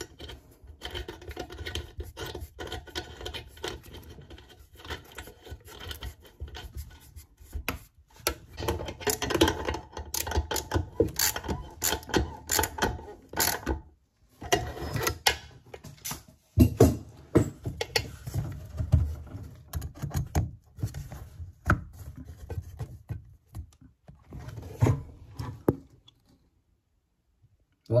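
Plumbing fittings handled under a ceramic basin: a braided stainless flexible tap connector is screwed onto the tap tail and its push-fit end is worked onto a copper pipe. The sound is irregular scraping and rubbing with clicks and small knocks, stopping briefly now and then and going quiet near the end.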